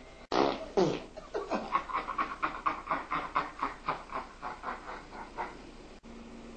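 A person farting, one long sputtering fart that starts with a loud burst and breaks into rapid pops, about four or five a second, before trailing off.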